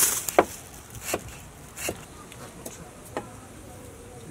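Knocks of food being chopped on a wooden board, sharp and spaced unevenly about one every second, with insects buzzing in the background.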